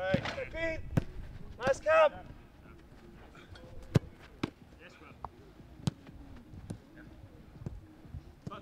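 Several sharp thuds of a football being kicked and caught, irregularly spaced. Loud shouted calls come in the first two seconds.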